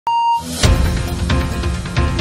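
A short, steady high beep, then a news-style intro theme starts with a loud hit about half a second in and carries on with a heavy low beat.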